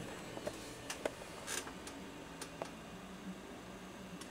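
Quiet room tone with a few faint scattered clicks and a faint low hum.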